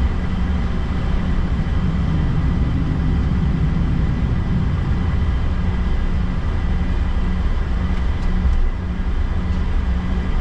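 Jet airliner cabin noise while taxiing: a steady low engine drone and rumble with a faint high whine.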